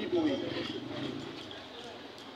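A pause in a man's open-air speech: a trailing voice at the start, then a faint murmur of voices that fades away.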